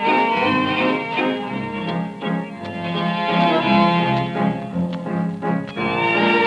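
A tango orchestra plays an instrumental passage of a waltz (vals), with no singing, on an early-1930s recording.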